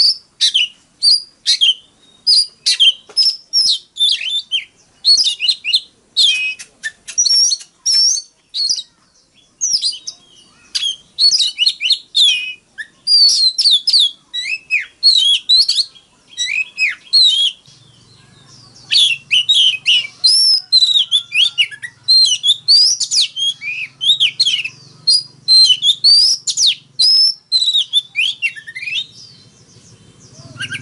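Oriental magpie-robin singing a rapid, varied song of sweet whistles, chirps and gliding notes, phrase after phrase with only brief pauses.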